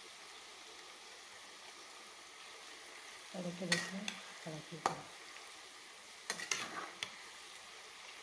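Jackfruit slices deep-frying in hot oil in a metal wok, a faint steady sizzle, while a metal ladle stirs them. The ladle scrapes and clinks sharply against the pan about halfway through and again near the end.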